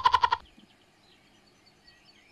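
A short, rapidly pulsing animal call lasting under half a second at the start, then a low background with faint bird chirps.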